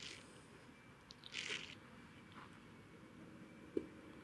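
Near silence: quiet outdoor room tone with a faint rustle about a second and a half in and one short soft tap near the end.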